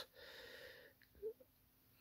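Near silence with a faint intake of breath in the first second, then a tiny mouth click.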